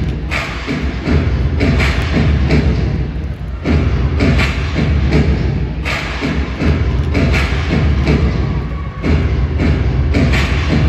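Recorded dance music with a strong, steady bass beat, playing loud in a large hall for a twirling routine.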